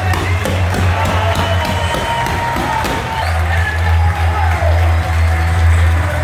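Loud music with a heavy bass line played over a stadium's public-address system, with a crowd cheering and whooping over it. The bass drops out briefly about halfway through, then returns.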